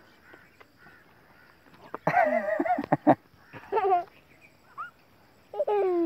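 Three quavering animal calls, the first the longest at about a second, the last falling in pitch near the end.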